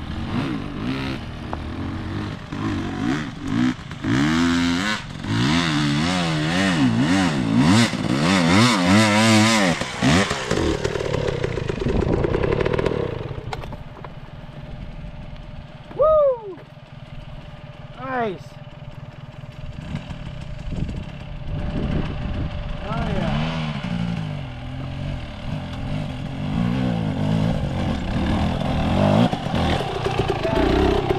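Two-stroke dirt bike engines revving up and down as riders climb the steep singletrack to the summit, loudest in the first ten seconds and again near the end as a bike pulls up close.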